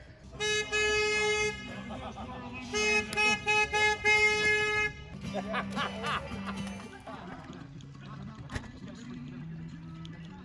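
A horn sounds twice in celebration: a steady toot of about a second, then a longer blast of about two seconds that pulses in loudness.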